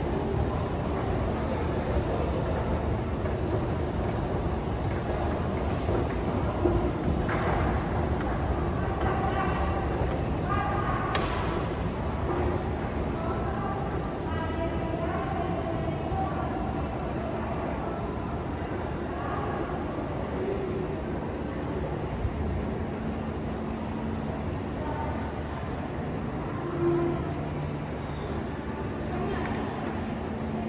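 Underground metro station ambience: a steady low rumble with faint distant voices, a little clearer for a few seconds about a third of the way in.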